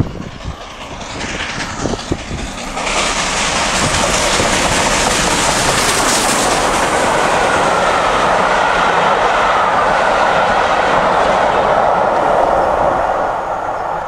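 A4 Pacific three-cylinder steam locomotive and its coaches passing at speed. The sound grows louder over the first three seconds, holds as a steady rush of coach wheels on the rails, and dies away near the end.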